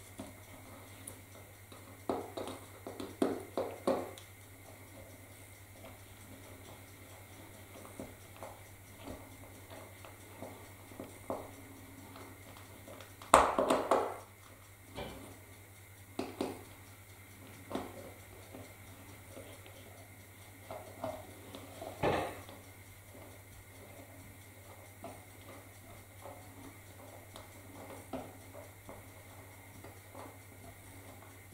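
Small clicks and light knocks of hand work on a model railway, as an overhead-line mast is fitted into the layout: a quick run of clicks about two to four seconds in, the sharpest knock about halfway, and another a little later, over a low steady hum.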